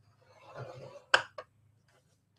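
Scoring stylus drawn along a sheet of designer paper in a scoring board's groove: a faint scrape, then a sharp click and a smaller second click just over a second in.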